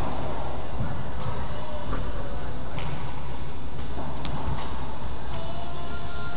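A handball smacking the court walls and floor with a hand slapping it, about six sharp hits spread across a few seconds, over a steady low rumble.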